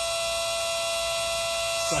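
Vevor 1/10 HP, 115 V electric water transfer pump running steadily, a constant even hum from its motor as it draws water from a tote and pushes it out through a garden hose at good pressure.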